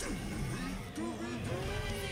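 Soundtrack of an animated fight scene: a steady low rumble, with a voice coming in during the second half.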